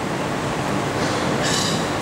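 Steady room noise of a crowded hall, an even hiss and rumble with no voice in it, with a short rise of higher hiss near the end.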